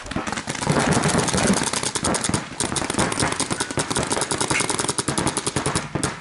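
Paintball markers firing rapid, evenly spaced strings of shots, with a brief break about two and a half seconds in.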